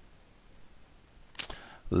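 Quiet room tone in a pause between words. About a second and a half in there is a short, sharp click-like sound, and a man's voice starts just before the end.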